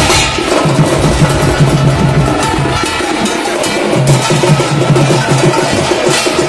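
Traditional drum ensemble of barrel and kettle drums with large brass hand cymbals playing a driving rhythm. The low drum notes drop out for about a second in the middle while the cymbals and sharper strokes carry on.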